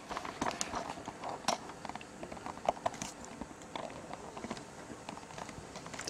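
Faint, irregular light clicks and knocks of handling noise as a camera is moved about and a ring-binder stamp album with plastic sleeves is set beneath it.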